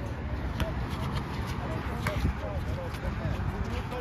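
Faint voices of players calling on a basketball court, with a few sharp knocks of a basketball bouncing on the hard court, over a steady low background rumble.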